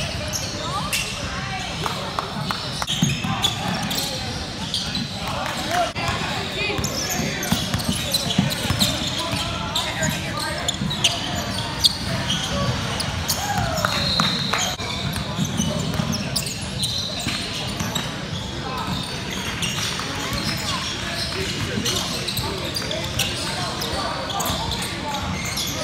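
Basketball game sounds in a large gym: the ball bouncing on the hardwood court, repeatedly throughout, under a steady mix of voices from players and spectators.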